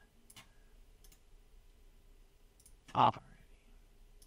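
A few faint, sharp clicks of a computer mouse, spread out and with two close together about two and a half seconds in.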